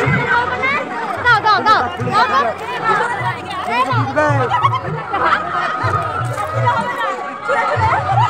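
Many people talking and calling out at once in a dense crowd, with low thuds repeating in short quick groups underneath.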